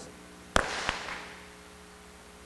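Two sharp hand claps about a third of a second apart, the first much louder, close to a lapel microphone, followed by a short haze of clapping that dies away within about a second.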